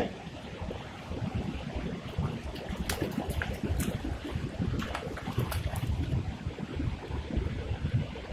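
A hooked bowfin splashing in the shallows at the river's edge as it is reeled in, several short splashes from about three seconds in, over the steady rush of the flowing river and wind.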